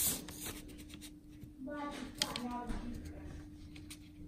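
A long paper till receipt rustling and crackling as fingers handle it and slide it along, with many small irregular crinkles.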